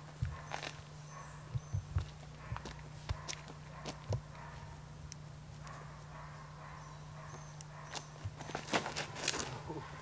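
Faint outdoor ambience with scattered soft footsteps and knocks from a disc golfer's run-up and throw off the tee, over a steady low hum.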